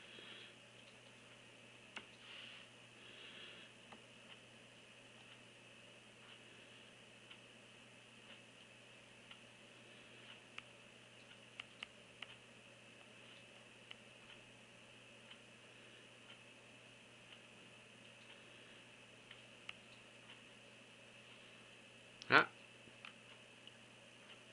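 Light stylus taps on a tablet's touchscreen: a few faint, scattered clicks over a steady low hiss and hum. A short spoken 'ah' comes near the end.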